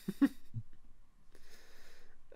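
Short vocal sounds from a person on a video call: a brief voiced fragment in the first half second, then a faint breath near the end.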